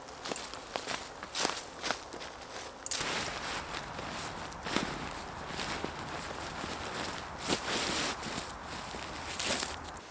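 Dry leaf litter crunching in scattered crackles under a person's feet and knees, then from about three seconds in a steady rustle of the OEX Bobcat 1's nylon fly and inner being folded and stuffed into the tent's pack bag.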